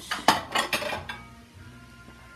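Glass bowls clinking and knocking as they are taken and set down on a kitchen counter: a sharp clink about a quarter second in, then a short clatter that is over by about a second in.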